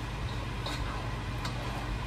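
Spatula stirring flour in a roux in a metal pot, giving three light ticks against the pot over a steady low hum.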